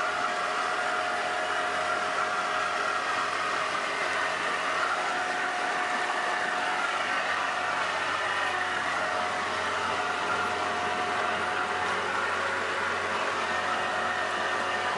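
A small boat's motor running steadily with a constant whine, over the rush of water and wind as the boat moves along the river.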